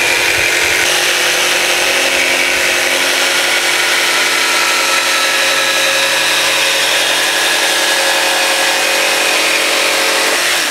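A RYOBI cordless jigsaw with a scroll blade runs steadily, cutting a curved line through plywood.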